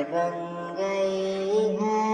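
Naat music: a wordless, chant-like melodic line of long held notes that glide from one pitch to the next about every second.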